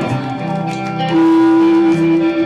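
Live band playing, with electric guitar; about a second in, a long held note comes in and is the loudest part.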